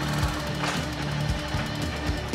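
Yamaha police motorcycle's engine idling under background music.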